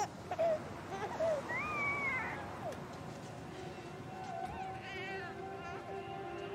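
A baby crying in short wavering wails, with a longer drawn-out cry about a second and a half in and another near the end. Music swells in under it in the last couple of seconds.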